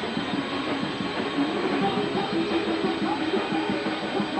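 A rock band playing live: distorted electric guitar over drums, loud and unbroken.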